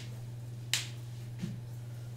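A single short, sharp click about three quarters of a second in, over a steady low hum.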